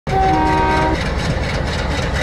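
Diesel locomotive horn sounding a chord for about a second. It is followed by the steady rumble of the locomotive and train running on the rails.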